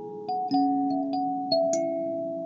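Lingting K17P kalimba (thumb piano) playing a slow Christmas carol melody: about five plucked metal-tine notes, each ringing on and overlapping a lower note that sustains underneath.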